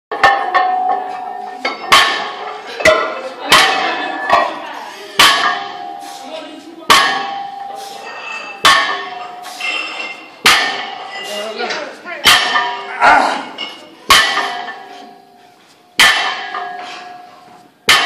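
A barbell loaded with 405 lb of iron plates set down on the gym floor at every rep of snatch-grip deadlifts: a sharp clang about every two seconds, the plates ringing briefly after each touchdown, about ten reps in all.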